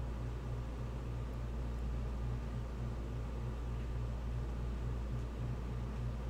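Steady low hum with a faint hiss and no clicks or changes: background room tone.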